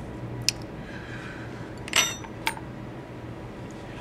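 A few light clicks from a small metal dental probe as it touches down, the one about two seconds in a brief metallic clink, over a steady low hum.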